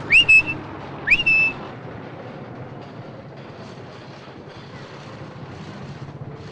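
A person whistling two short notes, each sliding quickly up and then held, in the first second and a half. After that there is only a steady, even background hiss and street hum.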